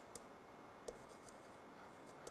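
Near silence: faint room tone with two faint short clicks, one near the start and one about a second in.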